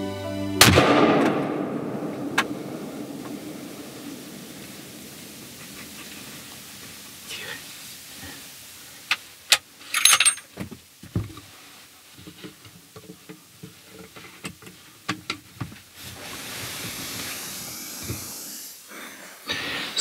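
A single rifle shot about half a second in, loud, with a long rolling echo that fades over a couple of seconds. Later come scattered clicks and knocks of the rifle being handled.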